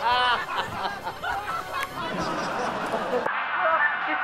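A man laughing loudly, a high whooping peal right at the start, then more laughter and voices, with an abrupt cut to a differently recorded stretch of laughter and talk near the end.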